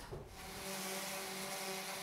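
Electric hand sander starting about half a second in and then running steadily, about to smooth the sharp edges of an oak board.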